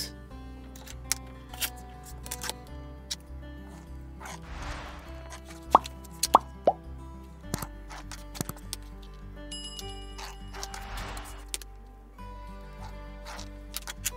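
Soft background music, under small clicks and scuffs of a clear quilting ruler and cotton fabric squares being handled on a cutting mat. Three short, sharp pops about six seconds in are the loudest sounds.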